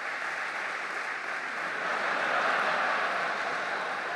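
Audience applauding, growing a little louder midway and then easing off.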